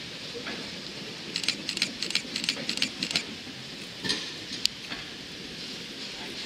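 Vintage Amsterdam tram with its trailer passing at low speed: a steady running noise, with a quick run of sharp metallic clicks from the wheels on the track about one and a half to three seconds in, then a few single clicks.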